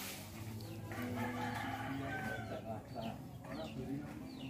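Birds calling: a longer pitched call through the middle, then a few short, high, falling chirps near the end.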